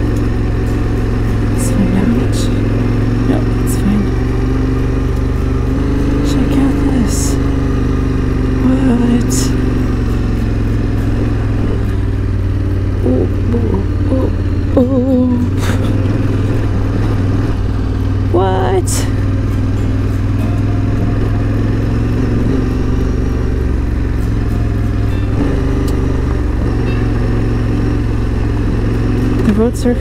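Yamaha Ténéré 700's parallel-twin engine running steadily while riding a rough gravel track, with occasional sharp knocks from stones and bumps under the bike.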